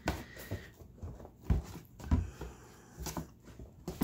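Wet, coffee-soaked paper being handled in a plastic tub: soft, irregular rustling and slapping of sodden sheets as they are lifted and laid back down, with a couple of dull thumps against the tub about halfway through.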